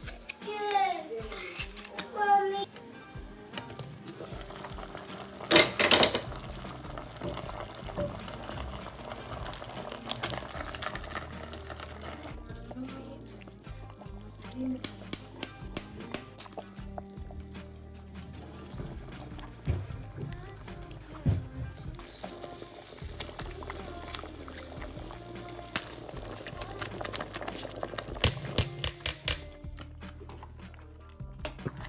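Background music over kitchen sounds: liquid ladled and poured in a large steel pot of stew, and a cooking spoon clinking against the pot with a quick run of clicks near the end. A child's voice is heard briefly at the start.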